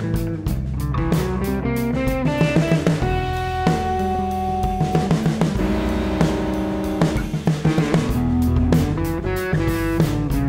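Instrumental rock recording: electric guitar over bass and a drum kit with a steady beat.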